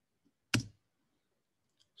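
A single sharp click about half a second in, a press on the computer's controls that advances the presentation slide.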